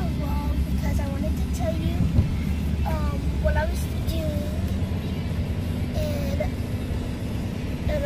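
Steady low rumble of a car's engine and road noise heard inside the cabin, with a child's voice over it and a single short thump about two seconds in.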